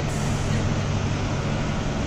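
Steady mechanical hum under an even rushing noise, level throughout.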